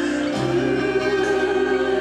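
A man singing a song into a handheld microphone over musical accompaniment, holding long notes with a change of pitch about a third of a second in.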